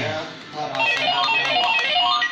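Toy hot pot game playing a quick electronic melody of short beeping notes after its start button is pressed, with a few light clicks.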